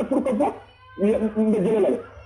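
A person's voice speaking emphatically in two stretches, with a short pause about half a second in.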